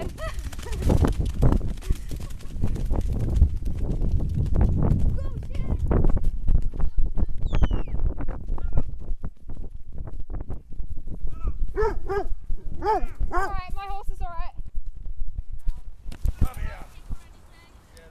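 A ridden horse moving over rough ground: irregular hoofbeats and jolting thumps under heavy wind and handling rumble on the camera's microphone. About twelve seconds in come a few seconds of high calling voices.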